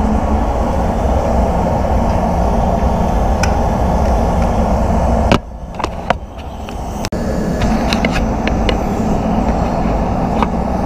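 Spray booth air-handling fans running: a steady rush of moving air with a low hum. A little past halfway the noise drops suddenly for about two seconds, with a few sharp clicks and knocks, then the steady airflow comes back.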